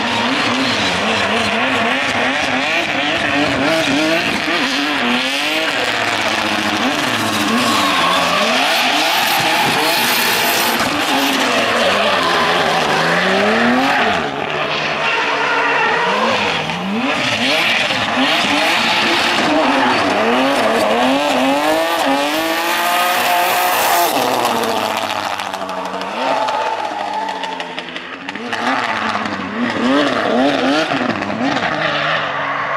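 A turbocharged BMW E30 drift car's engine revving up and down over and over as it drifts, with tyres squealing and skidding.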